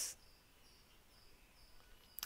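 Near silence: faint room tone in a pause between spoken words, with a few very faint, short high-pitched tones.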